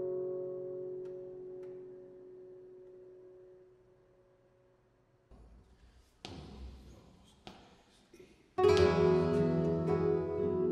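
Flamenco guitar notes ring and fade away over the first few seconds, down to near silence. After a quiet gap with a couple of faint sharp taps, flamenco guitars start playing loudly and suddenly about eight and a half seconds in.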